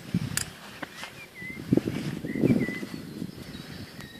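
Short bird chirps over irregular low, dull thumps and rustling of footfalls on grass, the thumps loudest around the middle.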